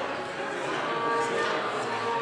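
Live opera singing with accompaniment, picked up from the hall: voices holding long, steady notes, several pitches overlapping.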